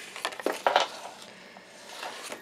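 Scored sheet of patterned designer series paper being folded and creased by hand along its score lines. It gives a few sharp crackling clicks in the first second, then quieter rustling.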